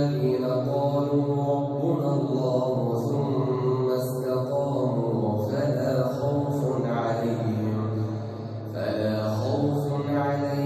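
A man reciting the Quran aloud in a melodic chant, amplified through the mosque's microphone. The recitation moves in long held notes, with a brief breath pause near the end before the next phrase begins.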